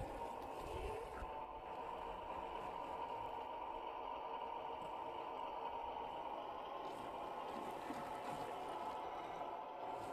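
Electric drive motor and gears of a 1/10-scale RC crawler whining steadily as it drives, with faint scraping and rattling of the tyres and chassis over rough dirt.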